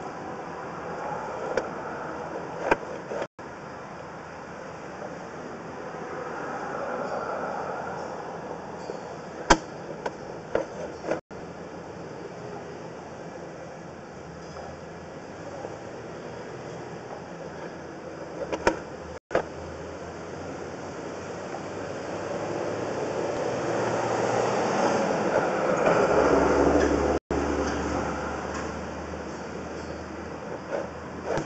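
Sewer inspection camera and its push cable being pulled back through the pipe: a steady rumble with a few sharp clicks and knocks, growing louder for several seconds near the end.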